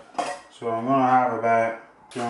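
Metal kitchenware clatter, with a clink about a split second in, as a stainless steel colander of drained pasta is handled over a pot and tipped into a bowl. A man's low voice sounds over it for about a second in the middle.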